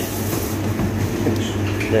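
Tap water running into a plastic bowl of falafel mix, stopping about half a second in. A steady low hum continues underneath.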